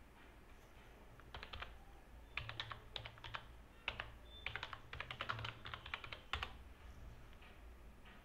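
Typing on a computer keyboard: a quick, irregular run of key clicks that starts about a second in and stops after about six and a half seconds.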